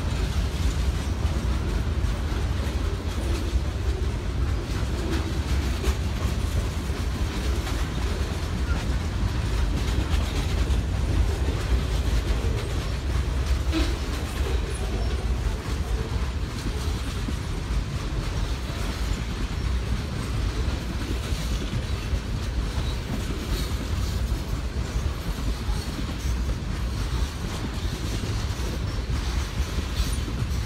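A freight train's boxcars and tank cars rolling steadily past: a continuous low rumble of steel wheels on rail that keeps an even level throughout.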